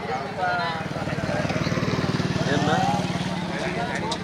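A nearby engine runs steadily with a fast, even beat, growing somewhat louder toward the middle and easing off near the end. A crowd of men shouts over it.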